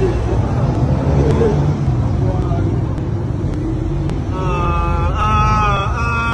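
Loud, steady low rumble of street noise on a phone microphone, with a murmur of voices. About four seconds in, a held, wavering pitched voice comes in and carries on to the end.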